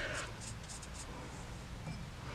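Faint brushing of a large pointed watercolour brush, loaded with clear water, stroking across watercolour paper.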